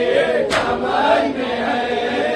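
A group of men chanting an Urdu salaam together in a slow, drawn-out melody, their voices gliding between held notes. A single sharp slap cuts through about a quarter of the way in.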